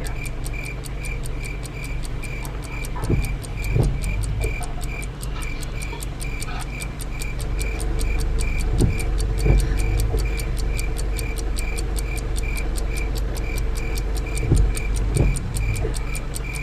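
Clock-ticking sound effect, steady at about two ticks a second, marking an awkward silence, over a low steady hum.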